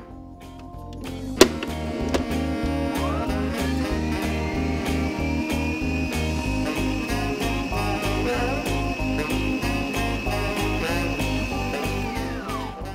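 Stand mixer motor spinning up about three seconds in, then a steady whine as the wire whisk briefly beats baking powder into the batter, winding down at the very end. Background music with guitar and a steady beat runs throughout, and there is a sharp click early on.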